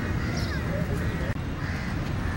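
Crows cawing, several short calls about a second apart, over a steady low rumble.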